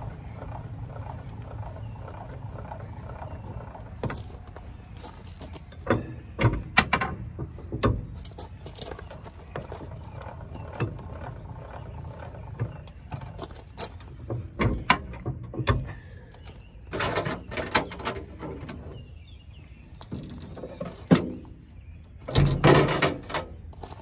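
Trailer tongue jack's motor running steadily as it raises the hitch to take the pressure off the weight-distribution bars, stopping about two-thirds of the way through. Sharp metal clanks and rattles from the hitch bars and chains come throughout, the loudest cluster near the end.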